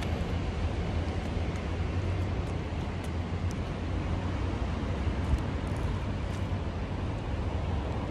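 Steady outdoor city ambience: a low rumble of street traffic with a few faint ticks.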